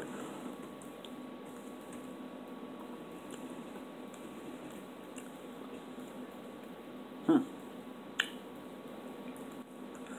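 A person chewing a piece of marinated sea cucumber, with faint wet mouth clicks scattered through. A short 'hmm' comes about seven seconds in, then one sharp click.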